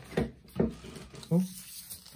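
Two short handling noises from foil Pokémon booster packs being moved within the first second, then a voice saying "ooh".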